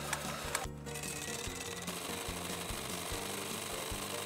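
Electric hand mixer running steadily, its beaters whisking egg-yolk sauce and then heavy cream, with a brief break about a second in. Background music with a low bass line plays underneath.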